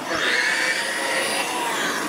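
Electric R/C monster truck's motor and drivetrain whining as it drives at speed. The pitch climbs briefly at the start, then holds nearly steady.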